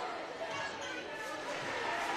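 Gymnasium crowd murmur with scattered voices, and a basketball and players' shoes on the hardwood court as players jostle under the basket on a free throw.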